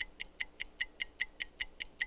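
Game-show countdown timer sound effect: a rapid, even ticking, about five sharp, high ticks a second, marking the time left to answer.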